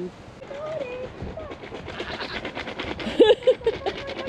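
Animal crackers being shaken to call goats: a rapid, crackly rattle from about halfway through, with a short voice-like call near the end.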